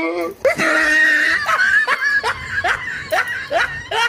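A person's high-pitched laughter: a held cry, then a run of short laughs, each rising sharply in pitch, about two or three a second.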